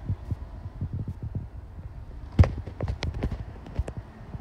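Footsteps on a hardwood floor with knocks and bumps from a handheld phone, sharper and louder from about halfway through.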